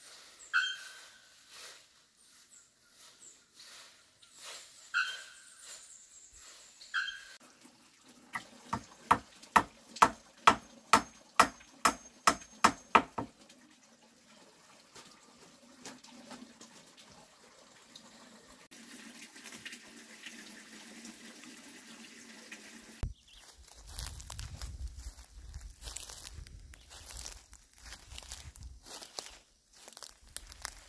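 Bare-throated bellbird (araponga) calling: a few single ringing notes in the first seven seconds, then a run of about a dozen loud, sharp strikes, about two a second, from about eight to thirteen seconds in. Low rustling and knocks of things being handled come near the end.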